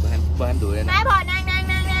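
Speech: a voice talking, then drawing out one long vowel, over a steady low hum.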